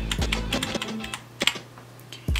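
Computer keyboard keys clicking as the editing timeline is stepped frame by frame, over short bits of recorded band audio playing back.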